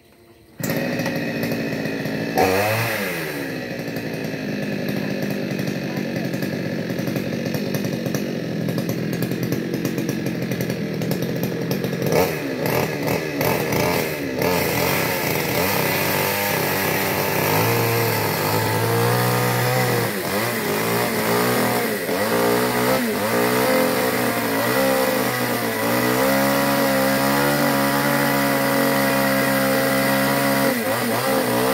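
Two-stroke gasoline chainsaw running. It comes in suddenly about half a second in and revs up about two seconds in, then runs steadily. Through the second half it revs up and down repeatedly.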